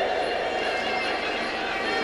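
Steady, even background noise of a sports hall: a hiss-like room ambience with no distinct events.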